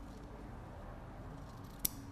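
A single snip of ribbon scissors cutting through ribbon: one short, sharp click near the end, against an otherwise quiet background.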